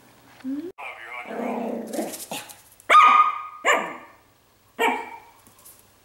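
Chihuahua puppy barking a few short, sharp, high-pitched yaps, the loudest about three seconds in.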